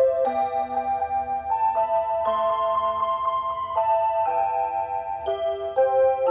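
Seiko Wave Symphony melody wall clock playing its tune: a slow melody of held, chime-like notes, several sounding together and changing every half second to a second.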